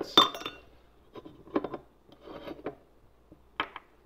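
An ice cube clinking against the inside of a silver wine cup as it is lifted out, with one bright ringing clink just after the start, followed by lighter knocks and taps as the ice is handled and set down on a hard countertop.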